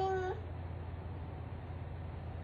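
A toddler's drawn-out vocal sound, held on one pitch, ending a moment in; after it only a steady low hum.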